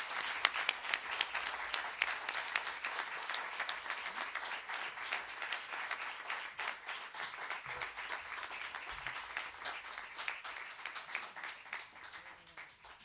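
Applause: many hands clapping at once, gradually thinning out and fading over the last few seconds.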